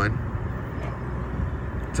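Steady outdoor background noise, a low rumble with hiss and no distinct event.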